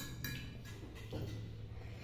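Low steady hum in a quiet room, with a couple of faint clicks near the start from forks on plastic plates.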